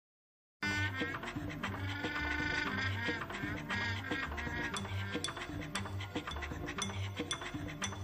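Quiet music with a steady beat and a held melodic line, starting about half a second in after a moment of silence.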